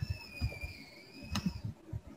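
A computer mouse clicking once, sharply, about one and a half seconds in, amid a few low thumps, with a faint high whistle-like tone that dips slightly in pitch and fades near the end.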